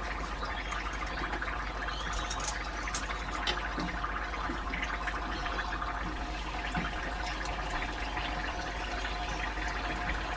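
Spring rolls deep-frying in a pot of hot oil: a steady sizzle with fine crackling as the oil bubbles around them.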